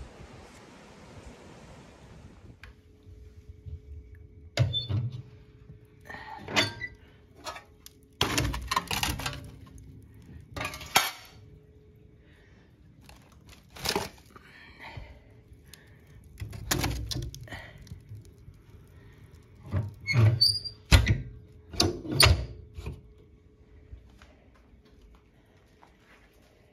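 Wind buffeting the microphone for the first couple of seconds. Then split firewood logs knock and clatter against each other and a wicker log basket as they are picked out, in a dozen or so irregular thunks, loudest in two clusters in the middle and near the end.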